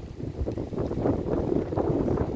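Wind gusting across a microphone: a low, uneven noise that swells and dips.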